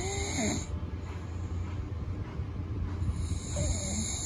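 A sleeping man snoring steadily, with a low sound.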